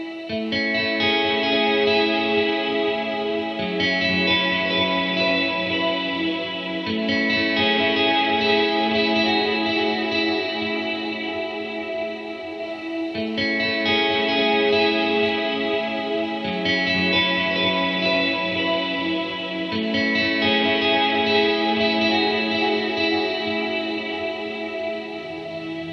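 Fender Stratocaster electric guitar playing slow, sustained ambient chords through a looper with delay, tape-echo and reverb pedals. The chords change every three to four seconds, and the same sequence repeats about every thirteen seconds as a loop.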